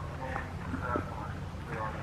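People talking in the background, over a steady low hum.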